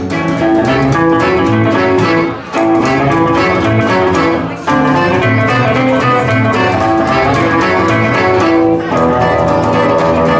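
Live acoustic swing band playing an instrumental passage on upright bass, acoustic guitars and accordion. The music dips briefly twice in the first half.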